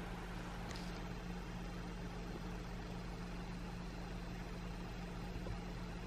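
Quiet room tone: a steady low hum with a faint even hiss.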